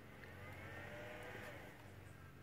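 Faint steady low hum. About halfway through, a faint tone rises and then falls.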